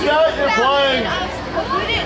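Several people talking at once, overlapping voices of a crowd chatting close by, with no music playing.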